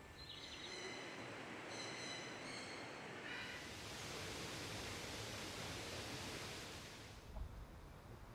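Outdoor ambience with a few short, high whistling calls in the first three seconds, then a steady rustling hiss for about four seconds, ending in a brief knock.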